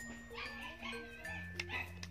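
Background music with steady held notes, over which a dog gives a few short yips and whimpers in the middle, with a sharp click just before the last one.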